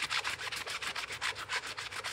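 Sponge dauber dabbed rapidly against a rubber stamp on an acrylic block to colour it with ink: a quick, even run of soft scratchy pats, about eight a second.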